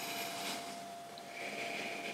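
Soft breaths through the nose as a glass of stout is raised to the face and smelled, over a faint steady high hum in a quiet room.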